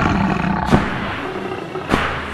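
A wampa's growling roar, a snow-monster creature effect, rough and sustained, with two sharp knocks cutting through it, one under a second in and one near the end.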